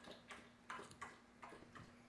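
Near silence: room tone with a faint steady hum and a few soft, faint clicks.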